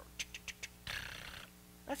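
A man's mouth sounds imitating a car that will not start on a flat battery: about five quick clicks, then a short breathy hiss about a second in.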